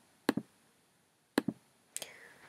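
Computer mouse clicking in three short groups, each a quick pair of sharp clicks, with near silence between.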